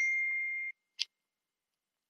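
An electronic notification ding on a computer, a clear ringing tone that fades out within the first second, followed by a single short tick about a second in.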